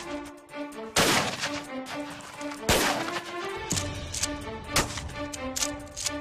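Two loud shotgun blasts about a second and a half apart, each with a short echo, as melons on stakes are shot apart. Background music with a steady melody plays throughout.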